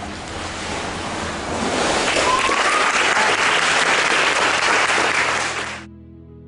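Water sloshing in a pool during a baptism by immersion, then applause and cheering that swell about two seconds in, with a short rising whoop, and fade out near the end.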